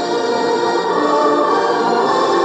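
Recorded music with a choir singing long, held chords.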